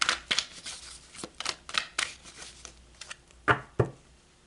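Tarot cards being handled and shuffled on a table: a string of short, quick papery flicks and rustles, with two louder taps near the end.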